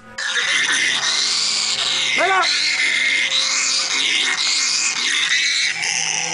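A small gliding mammal in distress, crying continuously in high, strained wails, an agonizing sound, with a short rising-and-falling call about two seconds in. Background music runs underneath.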